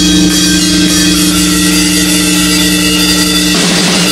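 Instrumental heavy post-rock: a distorted electric guitar chord held and ringing over drums and cymbal wash, moving to new notes near the end.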